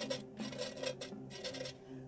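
A small hand blade scraping along the cut-out edge of a plaster pumpkin in a quick series of short strokes, shaving off the sharp edge and burr.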